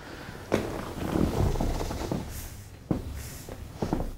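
Soft rustling and low thuds of a person rolling up on a padded exercise mat, with a sharp click about half a second in and another near three seconds.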